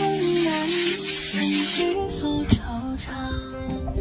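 Background music: a soft sung melody over plucked guitar. A brief hiss of noise sits under it in the first two seconds, and a single sharp knock comes about two and a half seconds in.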